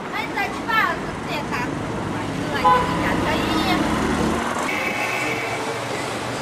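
People's voices in brief, pitch-sliding bursts over a steady background rumble of road traffic or a running vehicle. A steady high-pitched tone comes in near the end.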